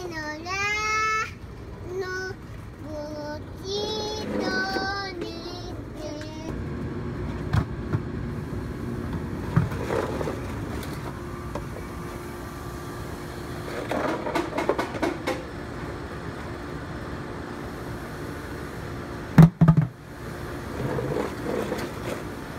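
A toddler singing in a high, gliding voice for the first several seconds, followed by scattered small voice sounds and a couple of sharp knocks a few seconds before the end.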